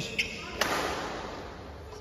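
A single sharp knock about half a second in, echoing briefly in a large hall.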